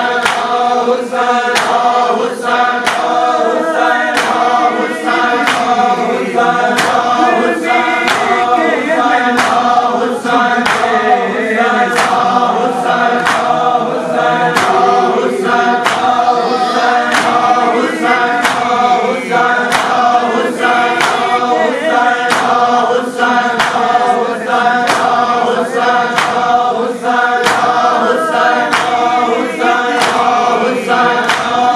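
A crowd of men chanting a mourning lament in unison, over the steady slaps of hands striking bare chests in matam, a little more than one stroke a second.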